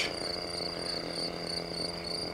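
Crickets chirping in a steady pulsed trill, about six to seven pulses a second, over a faint steady low hum.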